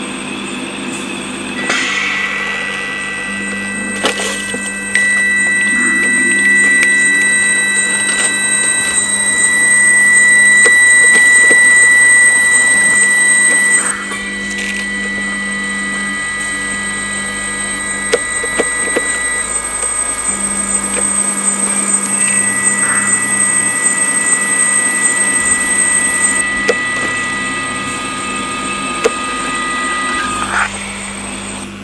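Electroacoustic sound collage of layered steady electronic tones over a low machine hum, with scattered clicks, built from recordings of a dialysis treatment. A high tone swells loudest in the middle and cuts off suddenly about halfway through, then new tones come in.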